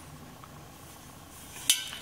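Quiet room tone with a faint hum, then a single sharp metallic clink near the end as a black steel stovepipe bend is handled.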